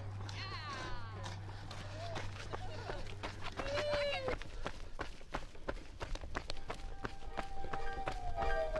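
Short high calls from people, one falling in pitch near the start and one held briefly just before halfway, over scattered sharp clicks and a low steady hum that stops just after halfway.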